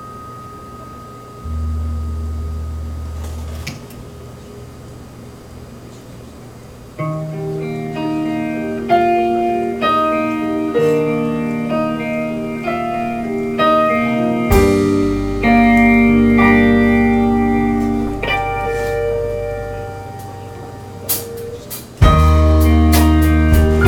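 Live rock band playing the instrumental opening of a song: sparse low bass notes at first, then electric guitar and keyboard picking out a melody from about seven seconds in, growing fuller, with drum hits coming in near the end.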